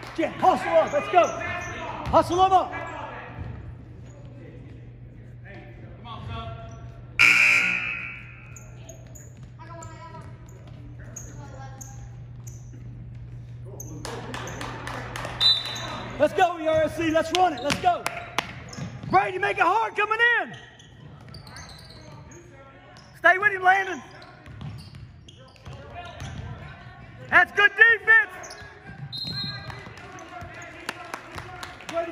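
Basketball bouncing on a hardwood gym floor, with voices echoing in a large gymnasium and a loud short burst about seven seconds in.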